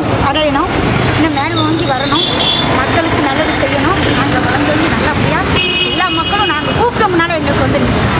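A woman talking into a bunch of reporters' microphones, with street traffic running behind her voice. Brief high steady tones sound about a second in and again around six seconds in.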